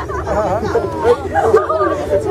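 Several people chattering over one another, with the steady low hum of a moving vehicle underneath.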